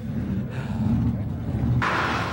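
A monster truck engine runs as a low rumble in the background, with faint voices over it. Near the end a sudden loud burst of noise cuts in.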